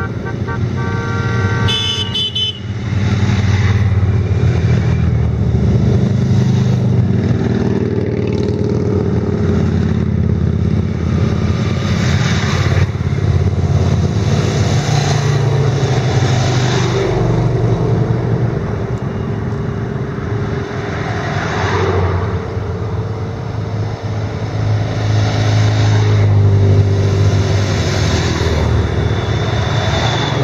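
A procession of motorcycles and motor trikes riding past one after another, their engines running continuously and swelling as each machine comes close. A horn toots briefly near the start.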